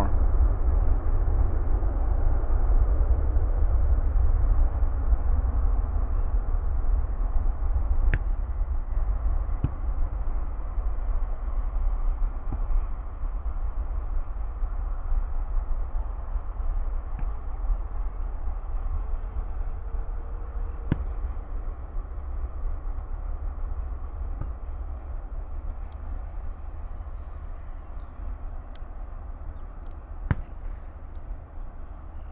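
Airbus A330-300 jet engines at takeoff power: a steady deep rumble with a broad hiss above it that slowly fades as the airliner rolls, lifts off and climbs away.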